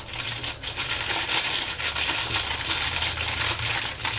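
Foil seasoning sachets crinkling continuously as they are squeezed and shaken empty over instant noodle cups, a dense crackle of many small ticks.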